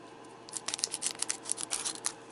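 Foil booster-pack wrapper crinkling and crackling as scissors cut across its top edge. A dense run of crackles starts about half a second in.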